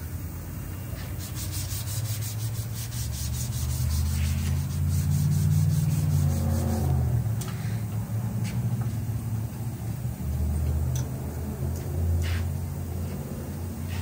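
Low, steady rumble of tyre-shop machinery with a rapid run of ticks, about seven a second, in the first few seconds, then scattered knocks and clicks as a large wheel and tyre is handled on a wheel balancer.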